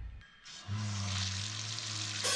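Bathroom sink faucet turned on at its lever handle; about half a second in, water starts running from the tap as a steady hiss, with a low steady hum underneath.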